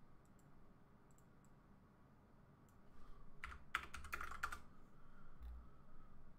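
A few faint computer keyboard keystrokes: a handful of scattered taps early, then a quick cluster about three and a half seconds in and a single stroke near the end.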